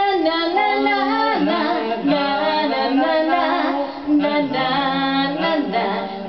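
A woman singing live into a microphone with electric-piano accompaniment, holding long notes with vibrato.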